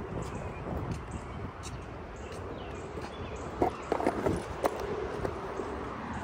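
Skateboard wheels rolling over rough concrete, a steady low rumble with a few sharp clacks a little past the middle.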